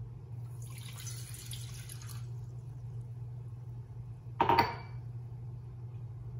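Water poured from a glass measuring cup into a stainless steel saucepan for about a second and a half. A sharp clink with a brief ring follows near the end as the glass cup is set down. A steady low hum runs underneath.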